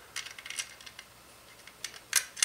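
Light metallic clicks and ticks of an M3 screw being handled and pushed through a mounting hole in an Arduino and RAMPS 1.4 circuit board: a quick cluster in the first half-second, then a few scattered ticks.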